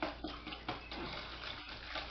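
Wire whisk beating a thin vinegar-based sauce in a stainless steel bowl: liquid sloshing and splashing with rapid, uneven whisk strokes.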